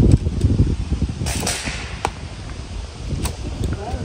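A recurve bow shot: the released string and arrow give a sharp snap about a second and a half in, among a few fainter knocks. Wind rumbles on the microphone throughout.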